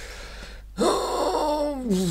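A man draws a breath in, then lets out a long voiced sigh that slides down in pitch for about a second, with his head thrown back.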